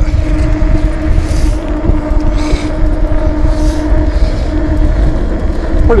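Electric bike motor of a 3000 W 48 V e-bike running at a steady cruising speed, giving a steady whine, over a heavy low rumble of tyres and air rushing past the mic.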